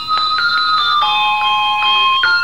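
Handbell-style chimes playing a slow melody, one note struck about every half second, each ringing on under the next.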